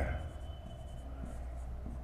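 Marker pen writing on a whiteboard: faint, soft strokes, over a low steady hum.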